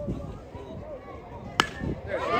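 A baseball bat strikes a pitched ball once: a single sharp crack about one and a half seconds in, over faint talk from spectators.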